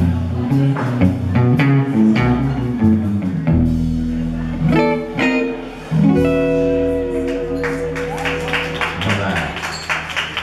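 Electric guitar with bass and drums of a live blues trio playing a song's closing bars: a run of picked notes, then a few chords struck and left ringing.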